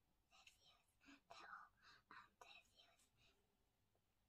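Near silence, with faint whispering in short breathy bursts.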